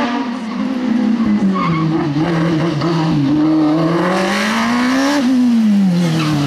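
Osella PA9/90 sports prototype's racing engine revving up and down hard through a cone slalom, its pitch climbing for over a second and then dropping sharply about five seconds in.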